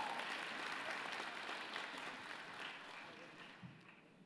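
Audience applauding: many hands clapping, dying away over the last couple of seconds.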